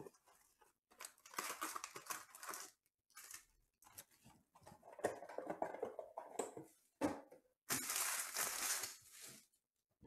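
Foil-wrapped trading-card packs crinkling and rustling as they are pulled out of a cardboard hobby box and stacked, in three bursts of handling.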